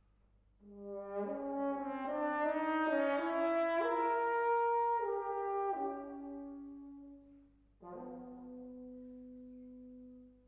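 Solo French horn playing unaccompanied: after a brief pause, a phrase of notes stepping upward and then falling back, dying away about seven seconds in, followed by one long held low note.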